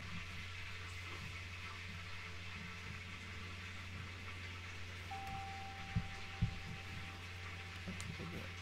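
A quiet, steady low hum of background noise, which the speaker puts down to a lamb being cooked. A faint thin tone comes in about five seconds in, and there are two soft thumps around six seconds.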